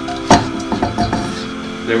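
A wooden cutting board knocks once sharply against the rim of a stainless steel saucepan, followed by a few lighter taps and scrapes as cauliflower scraps are pushed off the board into the pan.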